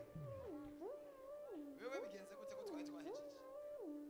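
A cat-like wailing cry that swings up and down between a low and a high note, about four rises and falls, with gliding steps between the notes.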